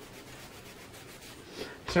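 Faint, steady rubbing of an ink blending tool worked upward over paper, applying ink a little at a time.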